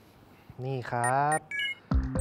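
A man's short spoken phrase, followed by a brief edited-in electronic sound effect: a few short high beeping tones stepping down in pitch. A low thump comes at the very end as the picture cuts to a graphic.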